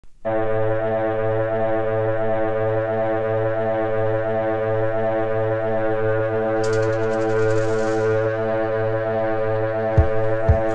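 Music: the opening of a post-punk song, one droning chord held steady with no change in pitch. A brief high hiss comes in about seven seconds in and fades by about eight.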